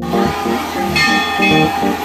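Temple bells ringing over music, with a couple of bright strikes about a second in and again half a second later.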